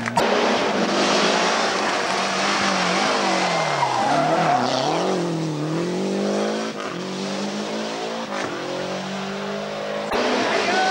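Lancia Delta rally car's engine revving hard through a tight bend, its pitch dropping and climbing again several times as the throttle is lifted and reapplied, with tyre noise on tarmac.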